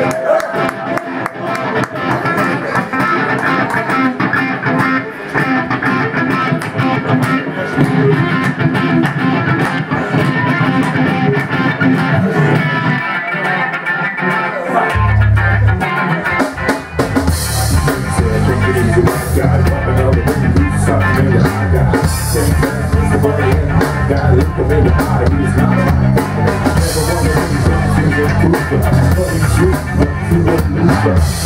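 Live rock band playing an instrumental passage: electric guitars over drums. About halfway through, heavy bass guitar and kick drum come in.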